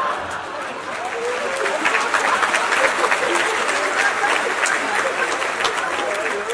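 Audience applauding, many hands clapping densely with a few voices mixed in.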